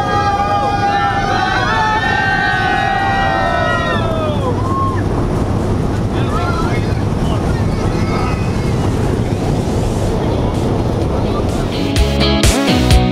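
Steady engine and airflow noise inside a small high-wing skydiving plane's cabin as it climbs after takeoff. Voices call out over it during the first few seconds.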